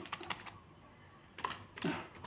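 A plastic tub of partly thawed frozen shrimp being handled, giving a few light clicks and taps at the start and again around a second and a half in.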